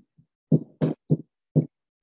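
Marker pen writing on a whiteboard: about five short strokes and taps, each a fraction of a second, with silence between.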